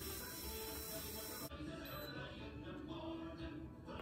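A steady breath blown into a handheld breathalyzer for a blood-alcohol test, stopping abruptly about a second and a half in. Faint background music plays throughout.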